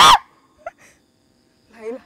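A woman's high-pitched frightened shout that cuts off just after the start. Then it is quiet, apart from a brief faint squeak and a short, faint voice sound near the end.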